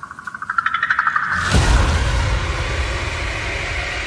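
Trailer sound design: a pulsing tone that speeds up and rises slightly for about a second and a half, then a deep boom hit that leaves a low rumbling drone.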